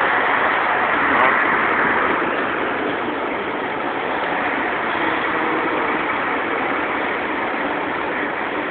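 Steady rushing noise of vehicles, such as a bus idling, slightly louder in the first two seconds.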